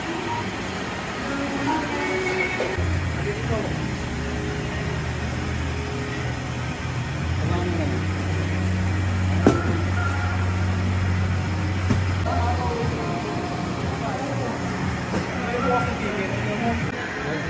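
Store checkout ambience: indistinct voices over a steady low hum, with a single sharp click about nine and a half seconds in.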